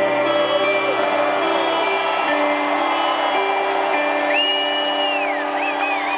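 Live rock music in an arena: electric guitar with held notes and singing voices. About four seconds in, a long high whoop rises out of the crowd and holds before falling away, followed by shorter cheers.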